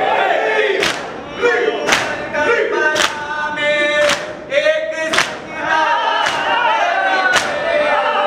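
A crowd of men chanting a Muharram nauha in unison while beating their chests in matam. The hand-on-chest strikes land together about once a second, seven in all, sharp and evenly spaced over the sung lines.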